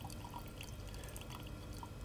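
Faint, scattered drips of chloroform falling from a separating funnel's open tap into a small glass beaker, over quiet lab room tone.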